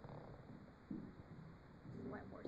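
Near silence: faint room tone of a hall with a few soft, low sounds.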